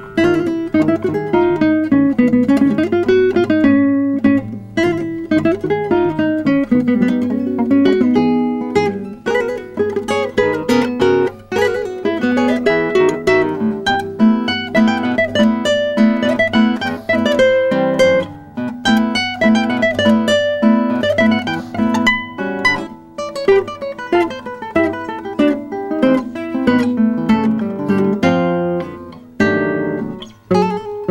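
A duet for two nylon-string classical guitars, playing fast plucked note figures continuously, with several lines of notes overlapping.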